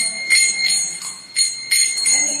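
Karatalas, small brass hand cymbals, struck together about five times in a kirtan rhythm, each clash leaving a bright ringing tone.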